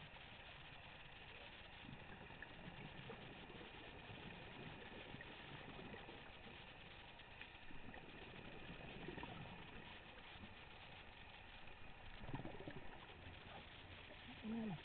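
Faint, muffled underwater sound through a camera housing: a steady hiss with low gurgling swells every few seconds, typical of a scuba diver's exhaled regulator bubbles.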